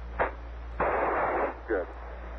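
Apollo 11 air-to-ground radio link: a sharp click, then a short burst of radio static hiss lasting under a second, over a steady low hum, between the landing callouts.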